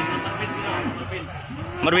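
Cattle mooing over the chatter of a crowd of men, with a loud moo starting near the end.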